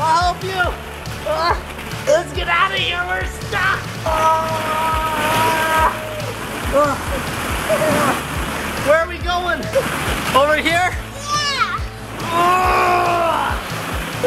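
Background music with a young child's high-pitched calls and squeals, over the rattling rustle of plastic balls in a ball pit being churned as she crawls and dives through them.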